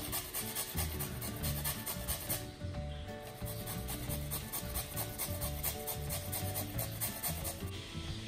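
Carrot being grated on a metal hand grater: a run of repeated rasping strokes, with a short break about two and a half seconds in. Background music plays underneath.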